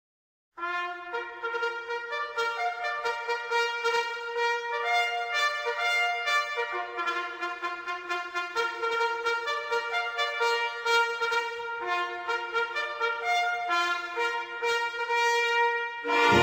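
Brass instruments, led by trumpet, playing a melody in harmony with no bass beneath, starting about half a second in.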